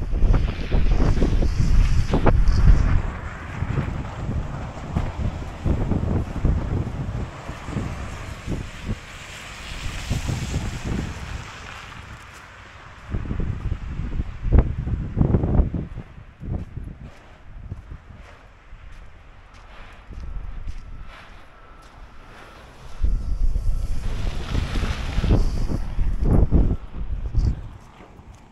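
Wind buffeting the camera microphone in gusts: a low rumble that swells and drops, heaviest in the first few seconds and again near the end.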